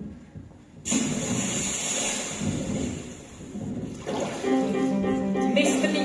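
Live stage orchestra: about a second in, a sudden loud wash of hissing noise sets in and fades away over about three seconds, then the orchestra comes in with held notes about four seconds in.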